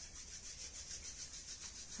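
Hands rubbing together, palm against palm: a faint, even swishing of skin on skin.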